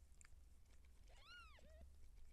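A cat gives one quiet meow about a second in, rising then falling in pitch, trailing into a brief lower note, over a low steady hum.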